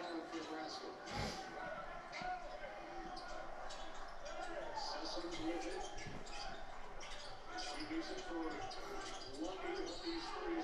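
Televised college basketball game playing through the TV across the room: a ball bouncing on the court in repeated short knocks over crowd noise and voices.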